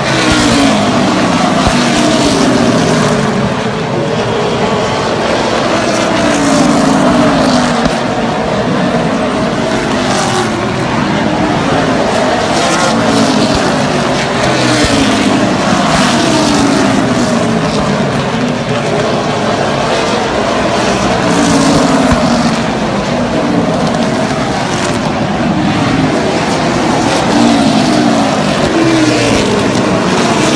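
A pack of super late model stock cars racing on a short oval, several V8 engines running hard at once. The engine notes rise and fall over and over, the pitch dropping as each car passes.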